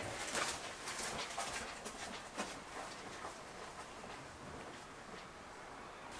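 Quiet background with a few faint, distant animal calls in the first half.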